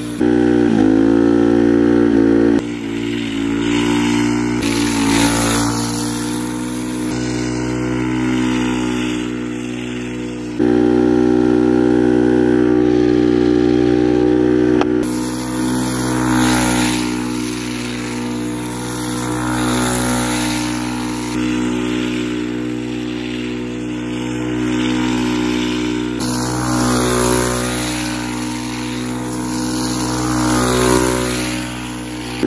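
Go-kart's small gas engine revving hard as it drifts, held at high revs for a few seconds about a second in and again from about ten seconds in, with the metal bucket sleeves on the rear tyres scraping over asphalt.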